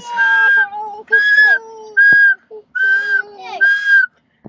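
Car warning chime: five steady, even beeps about a second apart, all at one pitch.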